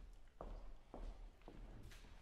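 Three footsteps of dress shoes on a wooden floor, faint and evenly paced at about two steps a second.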